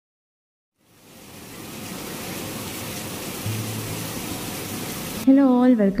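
Steady heavy rain fading in after about a second of silence, with a brief low hum about halfway through. Near the end, louder music with a melodic voice begins over the rain.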